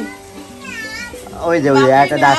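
A short, high cry that dips and rises in pitch, like an animal's call, about half a second in, over background music whose held notes grow louder near the end.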